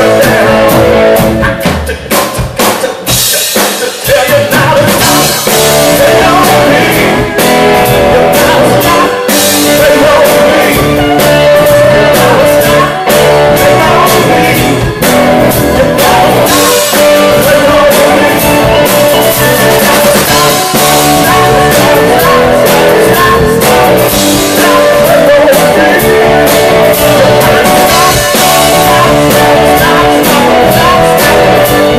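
Live rock band playing loudly: a man singing lead over a Gibson electric guitar and a drum kit, with a brief drop in the music about two to four seconds in.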